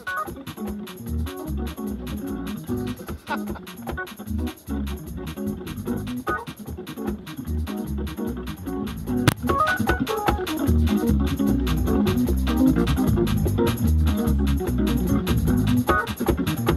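Hammond C3 organ played through a Leslie 147 speaker: gospel chords and runs over a deep bass line, with a steady ticking beat underneath. It gets louder about ten seconds in.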